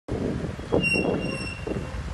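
Street traffic: a steady low rumble of idling and passing cars. A thin, high, steady squeal starts just under a second in and lasts about a second.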